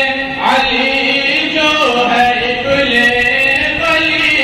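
A voice chanting in long, drawn-out held notes that glide up and down in pitch, without clear words.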